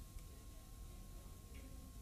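Very quiet background noise: a faint steady hiss with a thin steady tone and a few soft ticks, and no distinct sound event.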